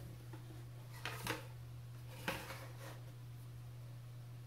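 A paintbrush scrubbing paint in a watercolor palette, in two short scratchy bursts about a second apart, over a steady low electrical hum.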